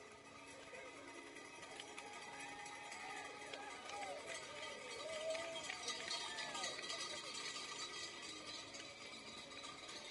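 A large pack of road cyclists rolling off at a mass start: indistinct calls and chatter from riders and spectators, with many small scattered clicks from the bikes.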